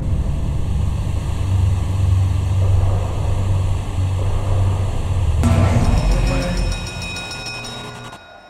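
Live concert music heard through a phone microphone in a large venue, a dense, loud wash dominated by heavy bass. About five seconds in it switches abruptly to music with clear held notes, which fades toward the end.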